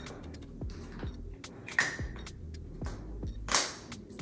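Two short hissing sprays from a pump mist bottle of facial spray, about two seconds in and again near the end, over background music with a steady beat.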